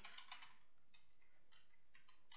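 Faint computer keyboard typing: a few scattered key clicks over near-silent room tone.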